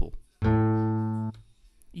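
A single sampled acoustic guitar note played through Ableton's Simpler sampler. It starts suddenly about half a second in, holds for under a second while fading slowly, then cuts off abruptly.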